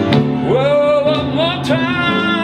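A man singing a gospel spiritual over his own piano accompaniment, his voice sliding up about half a second in into a long held note with vibrato.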